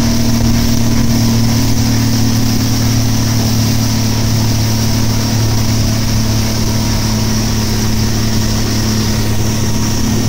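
Outboard motor running steadily under load while towing a rider, a constant low hum over the rush of the wake.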